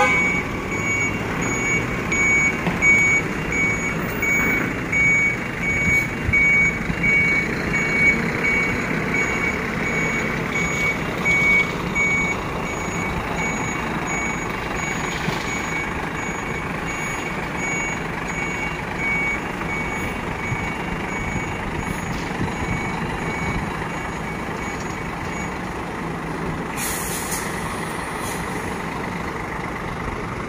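Heavy truck tractor unit hauling a lowbed trailer of crane parts, its diesel engine running under a steady, evenly repeating reversing-alarm beep that stops near the end. Shortly before the end comes a short hiss of air brakes.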